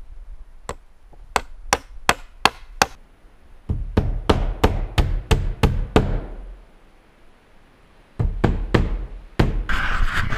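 Hammer driving nails into wooden lumber: runs of sharp, evenly spaced blows, about three a second, with short pauses between the runs.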